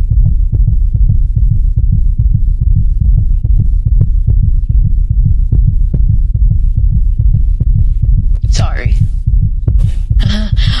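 Loud, low heartbeat-like throbbing laid as a dramatic sound bed, pulsing steadily, with a brief gliding higher sound shortly before the end.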